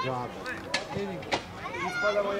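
Voices calling out across a football pitch, with two short sharp knocks about half a second apart.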